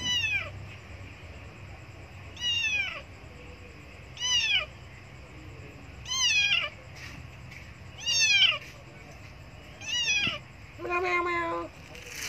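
A tabby kitten meowing loudly and repeatedly, six calls about two seconds apart, each falling in pitch: it is crying for food.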